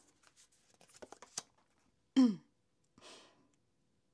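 Faint clicks and taps of a tarot deck being handled, then a short falling "hm"-like sound from a woman's voice about two seconds in, and a brief breathy hiss about a second later.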